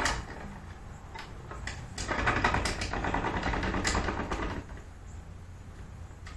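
Creaks and sharp clicks from a bow rig being drawn on a tiller tree, with a louder stretch of rubbing and creaking about two seconds in that lasts a couple of seconds.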